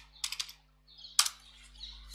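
Keystrokes on a computer keyboard: a short run of quick taps near the start, then a single louder key press a little over a second in as the command is entered.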